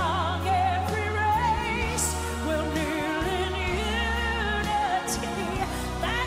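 A woman singing a Southern gospel ballad live, with strong vibrato and melodic runs, over a band with steady bass notes and a couple of cymbal hits.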